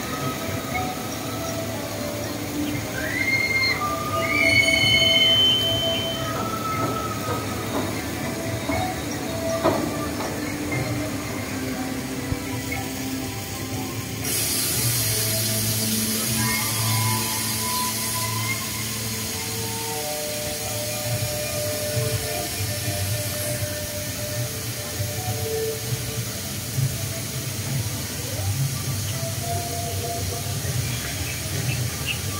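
Older Top Spin amusement ride in motion, its metal arms and gondola creaking and squealing in short high squeaks, mostly in the first few seconds, over a steady low machinery hum. About halfway through a hiss comes in for several seconds and then fades.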